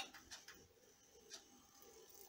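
Near silence: faint room tone with two or three faint ticks.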